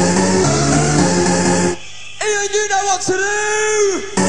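Rave dance music from a DJ mix with a repeating bassline. About a second and a half in, the beat drops out for a short break filled by two long held pitched notes from a sample or synth, and the full track comes back in at the end.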